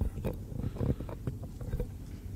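Scattered short knocks, thuds and rustles of a panelist moving to his chair and sitting down at the table.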